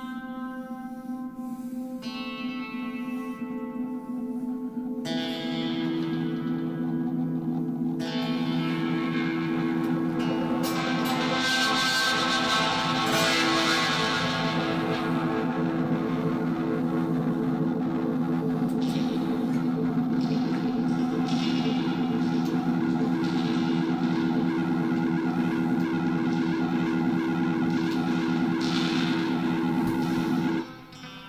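Electric guitar played through a delay effect: held notes are added one after another over the first several seconds and their repeats pile up into a dense, sustained wash of sound that then holds steady.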